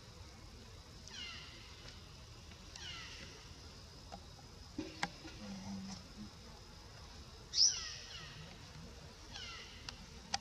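Baby macaque giving four short, high-pitched cries, each falling in pitch, a second or more apart; the third, about seven and a half seconds in, is the loudest and opens with a quick upward squeal. A couple of sharp clicks come about five seconds in.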